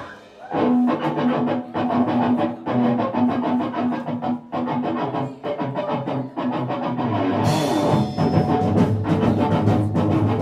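Live rock band playing amplified electric guitars, bass and drum kit. The music stops for a moment at the start, then comes back in with a steady repeated low note over regular drum hits, and cymbals join in about seven and a half seconds in.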